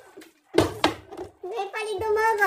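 A plastic water bottle, flipped through the air, lands on the table with a sharp knock about half a second in, with a second knock just after. Voices follow near the end.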